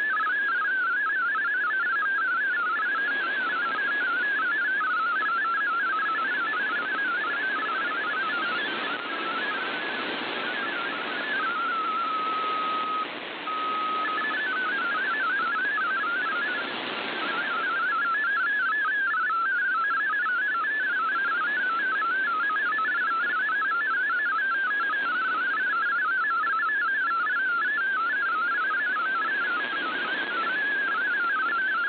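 MFSK32 digital text signal received over shortwave in AM: a fast warble of single tones hopping around 1.5 kHz over steady static hiss. About twelve seconds in, the warble gives way to a steady lower tone for about two seconds, broken once briefly, then the warbling resumes.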